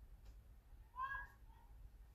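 A short, high-pitched vocal squeak from a person about a second in, meow-like in pitch, over a faint low room hum.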